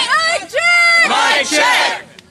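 A crowd of many voices shouting "We're not!" together in unison, over and over, as loud chanted phrases.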